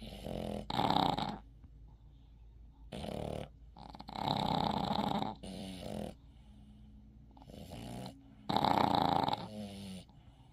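Sleeping Boston terrier snoring, a noisy breath in and out about every four seconds, loudest about a second in and near the end; such snoring is typical of the breed's short, flat muzzle.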